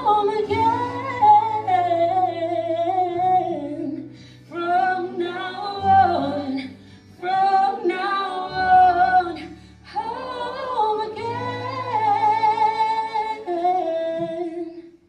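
Choir singing in phrases of a few seconds with short breaths between them, over steady held low accompaniment notes; the last phrase ends on a held note near the end.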